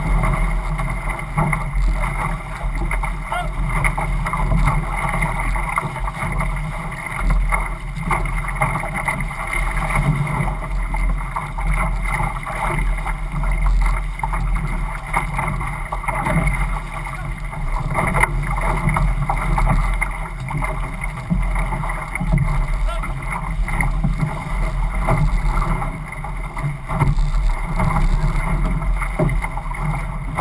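Water rushing and splashing past the hull and outrigger float of a racing outrigger canoe under way, with paddles digging in. Wind buffets the microphone with a steady low rumble.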